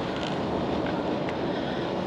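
Steady road noise inside the cabin of a car driving along a highway.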